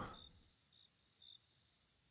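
Near silence, with three faint, short high chirps of crickets in the background.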